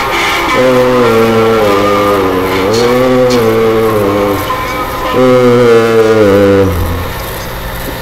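A man's voice chanting three long held 'oh' notes, each rising in pitch at its start and lasting over a second, over a low steady hum.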